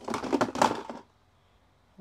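Rustling and knocking as a pair of leather sneakers is pulled out of a plastic storage tub, rubbing against the tub and the toys in it, for about a second.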